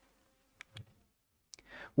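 Two quick, faint clicks about a fifth of a second apart from a handheld presentation clicker advancing the slide, in an otherwise quiet pause.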